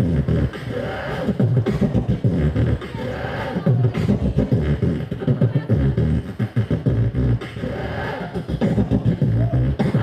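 Solo beatboxing into a handheld microphone: a fast, steady run of mouth-made kick-drum and bass hits with vocal sounds layered over them.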